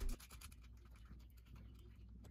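Faint scratching and light clicks of fingers handling small metal hardware on a radio's metal chassis: a star washer and nut being fitted onto the antenna connector.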